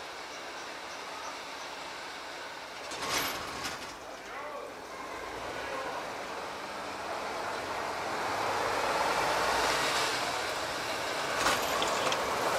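Vintage M131.1 diesel railcar getting under way and approaching, its engine and running noise growing steadily louder. A short burst of noise comes about three seconds in.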